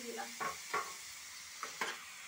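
Chowmein noodles stir-frying in a pan: a spatula scrapes and tosses them several times over a steady sizzle.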